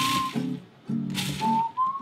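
Cuisinart food processor pulsed twice, chopping pecans: the motor hum and the nuts rattling in the bowl, each pulse stopping short. Whistled background music runs underneath.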